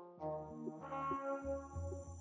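Background music: sustained chords over a bass line that pulses about twice a second.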